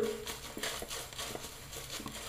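Vie-Long horsehair shaving brush worked over a lathered face, giving a faint, soft scratchy swishing in a few short strokes.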